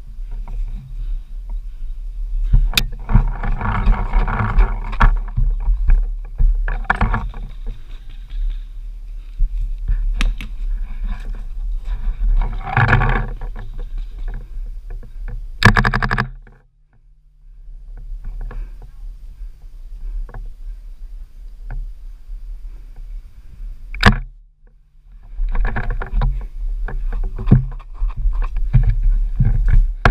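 Rumbling wind and handling noise on a wearable camera's microphone as a paintball player moves through dry grass and brush, with scattered knocks and two sharp cracks. The noise drops away briefly near the middle and again later on.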